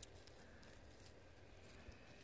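Near silence: faint background hiss with two faint clicks, one at the start and one near the end.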